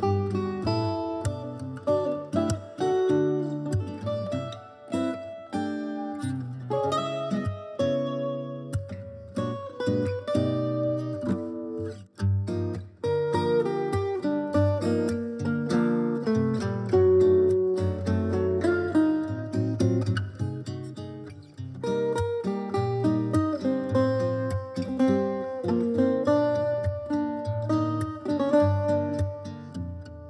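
Instrumental music: a Portuguese guitar plucking a bright, quick melody over a lower guitar accompaniment, with a short break in the flow about twelve seconds in.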